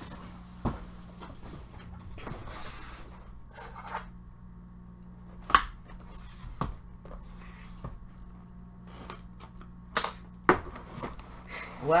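A cardboard box being handled and unsealed: a few sharp knocks and taps of the box on the tabletop and the rustle of tape seals being peeled off. A steady low hum runs underneath.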